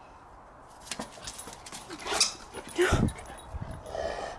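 A bullmastiff and a French Bulldog puppy vocalizing at play: a high, rising yelp about two seconds in, then a louder, deeper grunt about three seconds in, with scattered light clicks of scuffling.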